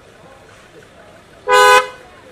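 A car horn gives one short, loud beep about one and a half seconds in.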